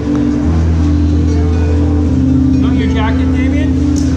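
Concert harp playing a slow tune in held low and middle notes, with a deeper bass note coming in about half a second in. A person's voice cuts across it briefly about three seconds in.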